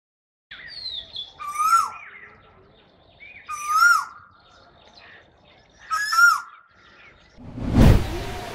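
A bird calling: three loud whistled phrases about two seconds apart, with fainter chirps between them. Near the end a rising whoosh swells up.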